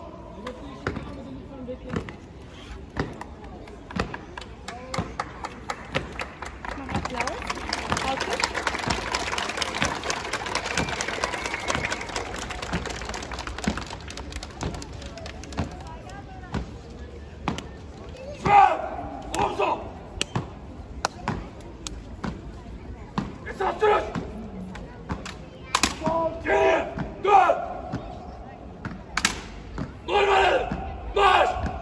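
Honour guard marching in step on stone paving: a run of sharp boot strikes and knocks, with a swell of crowd noise in the middle and voices from the crowd in the second half.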